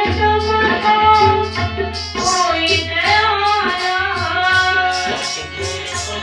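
Sikh kirtan: a woman singing a devotional hymn to harmonium accompaniment, with tabla played alongside. The tabla gives deep bass strokes and sharp treble strokes in a steady rhythm under sustained harmonium chords.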